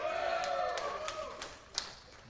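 Audience cheering in response to a question, with a few scattered claps.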